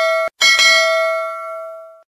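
Notification-bell chime sound effect: a bright ding that cuts off abruptly a moment in, then two quick strikes about half a second in that ring on and fade away by the end.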